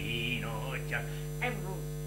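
Steady electrical mains hum, with faint voices underneath, about half a second in and again near the end.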